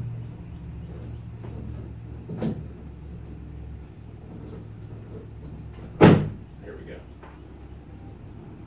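A plastic GoPro mount knocking against a kayak's accessory track as it is fitted: a small click about two and a half seconds in, then a sharp, loud knock about six seconds in, over a steady low hum.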